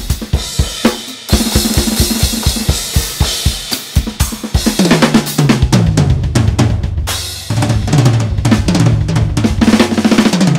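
A drum kit with Soultone cymbals played at speed. The first few seconds are a run of rapid, even strokes under cymbal wash. Then come fills around the toms, with a short break a little past the middle.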